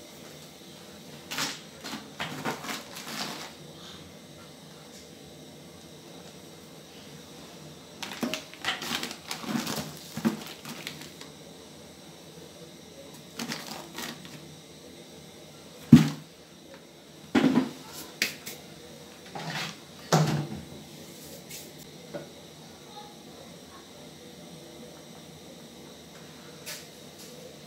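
Intermittent clinks and knocks from a glass bowl and an aluminium cooking pot being handled as flour is tipped into boiling water. The sounds come in short clusters, with a single sharp knock loudest about two-thirds of the way through.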